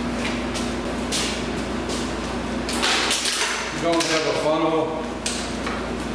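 A clear plastic bottle being handled and wiped with a rag: short clicks and a rough scraping rustle near the middle, over a steady low shop hum, with a brief murmur of a man's voice.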